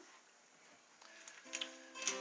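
Near silence, then about a second in an acoustic guitar starts softly, a few sustained plucked chords that lead into the next hymn.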